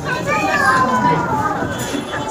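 A child's high-pitched voice with other voices in the background, rising and falling through the first half.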